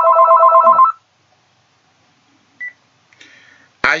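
Telephone ringing with an electronic ringtone, a rapidly pulsing chord of several steady tones, which stops about a second in as the call is answered. A single short beep follows midway.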